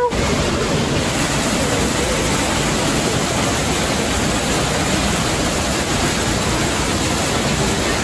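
Indoor artificial rock waterfall pouring into a pool: a steady rush of falling and splashing water.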